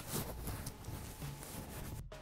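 Faint handling noise of fingers working a ribbon cable connector and the plastic chassis of a rugged laptop: soft rubbing with a few light clicks.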